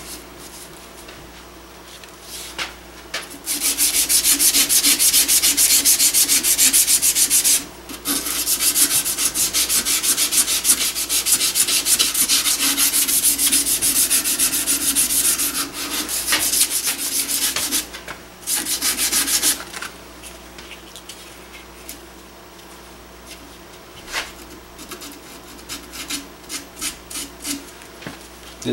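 Abrasive strip pulled rapidly back and forth around a round gun barrel, shoe-shine style, sanding and polishing it. The scraping runs in long bouts with brief breaks about 8 and 18 seconds in, then turns quieter and more scattered after about 20 seconds.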